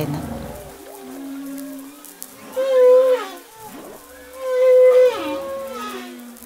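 Whale song played back as a recording: long pitched moans that glide up and down, with two louder calls, the first about two and a half seconds in and the second about four and a half seconds in.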